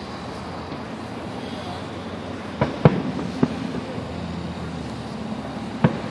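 Distant fireworks bursting: four sharp bangs, three close together around the middle and one near the end.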